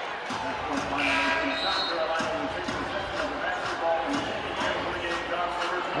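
A basketball being dribbled on a hardwood court, about two bounces a second, over a murmur of voices in the arena, with a brief high squeak about one and a half seconds in.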